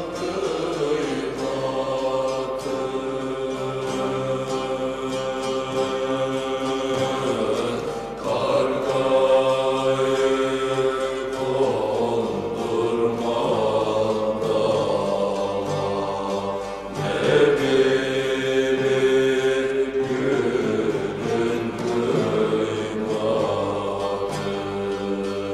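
Turkish folk music (türkü) from a bağlama ensemble, with long held sung phrases over the massed plucked strings.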